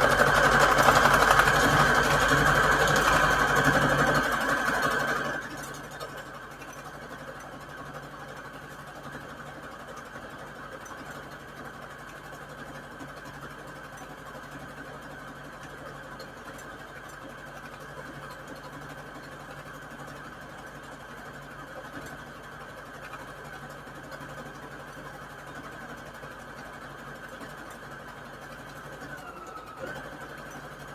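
Electric sewing machine stitching a fabric strip onto a paper index card. It runs loud for about the first five seconds, then carries on more quietly and steadily.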